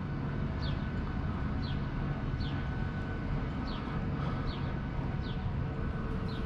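A steady low machinery hum, with faint, short, high chirps that fall in pitch about once a second, like small birds calling.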